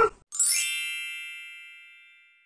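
A single bright metallic ding about a third of a second in: an edited-in chime sound effect whose high ringing tones fade away over about a second and a half.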